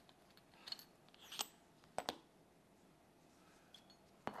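Faint clicks and light taps of a metal CPU delid tool and the processor in it being handled, a few short ones in all, the loudest a close pair about two seconds in.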